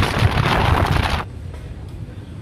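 Wind rushing over the microphone with the low drone of a Kawasaki Versys 650's parallel-twin engine while riding at road speed. It cuts off abruptly a little over a second in, leaving quieter outdoor background.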